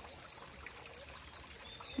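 Faint, steady trickle of water from a small stone garden fountain.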